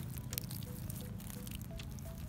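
Water from a plastic watering can's rose spout pattering and dripping onto loose soil and tomato leaves, with soft background music.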